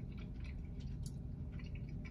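Faint chewing of a bite of soft peanut butter cookie, with small scattered clicks of the mouth, over a low steady hum.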